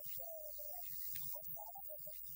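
A man's voice, faint and garbled, over a steady low hum.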